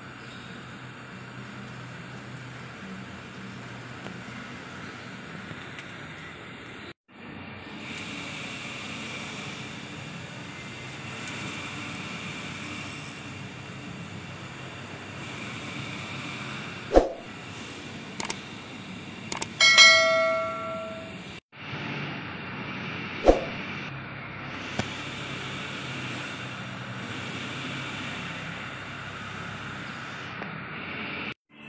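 Steady running noise of crushing-plant machinery and conveyor belt. A sharp metal knock comes about halfway through, a ringing metallic clang a few seconds later, and another knock after it.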